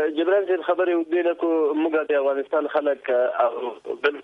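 Speech only: a person talking steadily over a narrow-band line, thin-sounding like a telephone or remote link.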